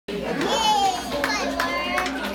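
Young children's voices chattering and calling out, high-pitched and overlapping, with a few short clicks among them.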